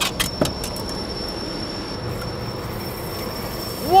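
Steady wind and water noise on an open boat, with a thin high-pitched whine throughout and a few sharp clicks in the first second.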